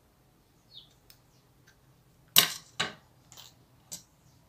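Acrilex scissors snipping sewing thread at the centre of a ribbon bow: two short, sharp snips close together about two and a half seconds in, then a fainter one and a small tick near the end.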